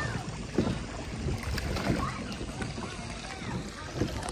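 Plastic paddle wheels of small hand-cranked kids' paddle boats churning and splashing the water of a shallow pool, unevenly.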